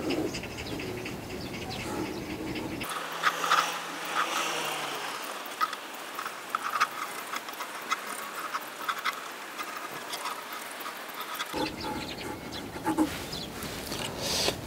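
Pencil sketching on a stretched canvas: light, irregular scratches and taps. Wind rumbles on the microphone for the first few seconds.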